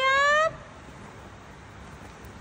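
A woman's high, drawn-out word rising in pitch, ending about half a second in, then quiet room tone with a faint hiss.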